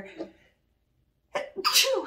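A woman sneezes once, suddenly and loudly, about one and a half seconds in.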